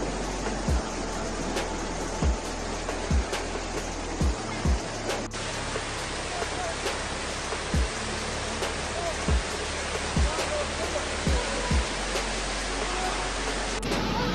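A steady, full rush of fast-flowing muddy floodwater under background music, which has a low drone and about ten deep thuds at uneven intervals.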